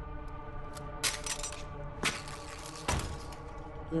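Tense film score of sustained tones, broken by three sharp knocks about a second apart, the last the heaviest, as a handgun is lowered and laid on the floor.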